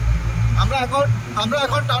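Steady low drone of a car driving through a road tunnel, heard from inside the cabin, with a person's voice over it from about half a second in.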